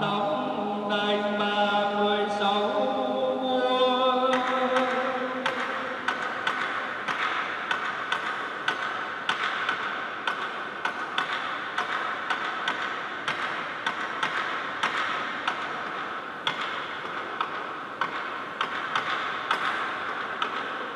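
Liturgical chant in a large church: a single sung voice holds long chanted notes for about four seconds, then gives way to many voices of the congregation chanting together in a dense, steady murmur.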